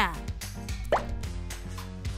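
Light background music with a single quick rising 'bloop' cartoon sound effect about a second in.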